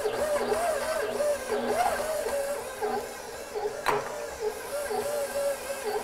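KitchenAid stand mixer running steadily, its flat beater working a stiff yeast dough in the steel bowl, with background music playing over it. A single sharp knock about four seconds in.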